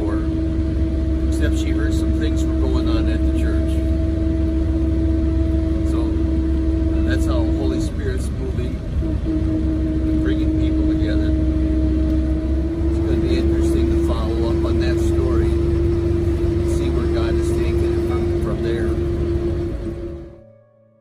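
Minibus running on the road, heard from inside the cabin: a steady low rumble with a constant droning whine that dips briefly about eight seconds in, under faint voices.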